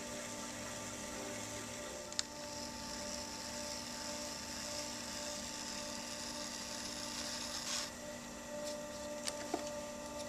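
Electric pottery wheel motor humming steadily while a metal loop trimming tool scrapes a ribbon of clay off the base of a leather-hard cup. The hissing scrape starts about two seconds in and stops sharply near eight seconds.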